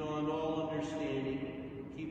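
A priest's voice chanting a prayer, holding steady notes with short breaks between phrases.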